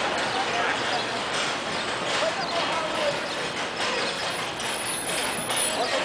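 Steady city background noise with indistinct voices and scattered light knocks and clatter.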